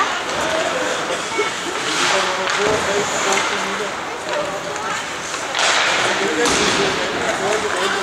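Ice hockey rink sound: spectators' voices talking throughout, with two short hissing scrapes of skates on the ice, about two seconds in and near six seconds.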